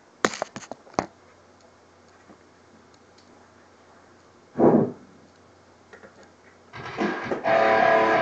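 A few clicks and knocks as the webcam is handled in the first second, a single short thud about halfway through, then a metalcore track with distorted electric guitars starts loudly about seven seconds in.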